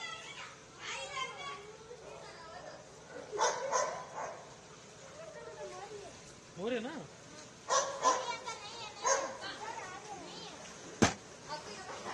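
Scattered voices and short calls from people out on a flooded street, over a low steady background, with one sharp click about eleven seconds in.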